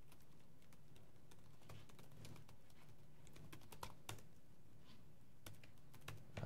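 Faint laptop keyboard typing: irregular key clicks at a varying pace over a low steady hum.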